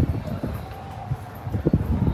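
Wind rumbling on the phone's microphone outdoors on an open ship deck, with a few short knocks of footsteps, clearest about one and a half seconds in.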